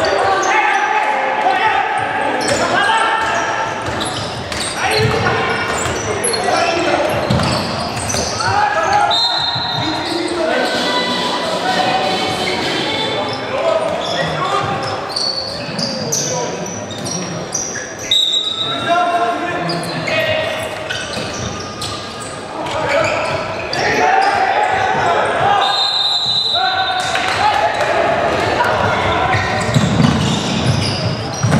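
Handball game sounds echoing in a large sports hall: the ball bouncing on the wooden court, with players and spectators shouting throughout. A few brief high-pitched tones cut through about a third of the way in, around the middle, and again near the end.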